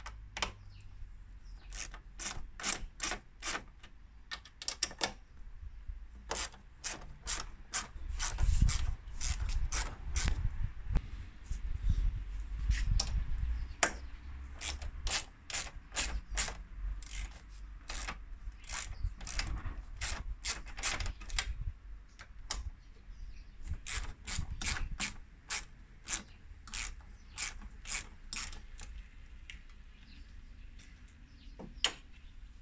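A hand socket ratchet clicking in quick runs as it turns the nuts on a car's strut tower brace, with pauses between strokes. A low rumble joins in the middle stretch.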